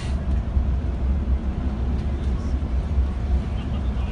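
Steady low rumble of a moving coach bus heard from inside the cabin: engine and road noise.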